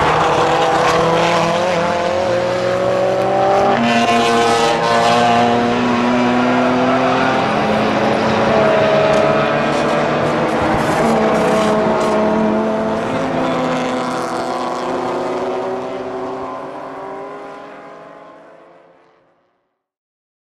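Several drift cars, including a Nissan Silvia, with their engines revving hard and their pitch rising and falling as they slide through a corner. The sound fades out over the last few seconds.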